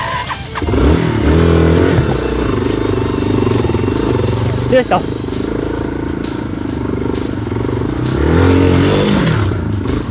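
Off-road motorcycle engine running under load on a rough trail, revving up and easing off about a second in and again near the end, with a short voice exclamation about halfway through.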